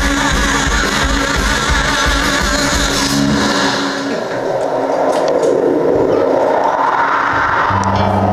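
Live rock band playing loud distorted electric guitar, bass, keyboard and drums. About four seconds in, the drums and bass drop out, leaving a wavering wash of distorted guitar noise with a few sharp hits.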